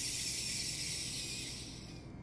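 Soy milk squeezed by hand out of a cloth bag of soybean mash, streaming and dripping into a stainless steel bowl: a steady rush of liquid that fades out near the end.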